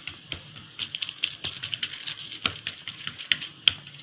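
Fingers patting and pressing mixed-flour dhapate dough flat on a plastic sheet: a quick, uneven run of light taps and small plastic crinkles.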